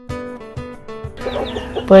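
Soft held background music notes, then domestic hens clucking from a little over a second in.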